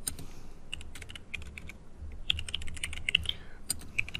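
Typing on a computer keyboard: runs of quick key clicks separated by short pauses.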